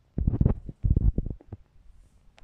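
Hedgehog foraging in garden soil, making two bursts of quick crackly snuffling and chewing noises, each about half a second long.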